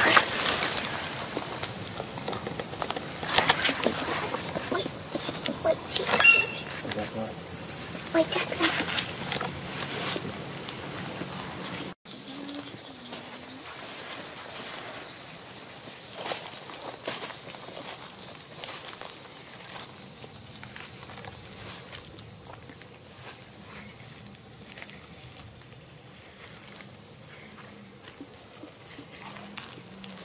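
Footsteps crunching through dry leaf litter and brush, irregular and close, with a steady high-pitched insect drone behind. About twelve seconds in the sound drops suddenly and the steps go on more quietly.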